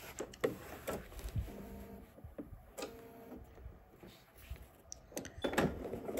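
Quiet handling of a metal zipper and fabric at a sewing machine: scattered light clicks and rustles, with a faint steady machine hum for a moment in the middle.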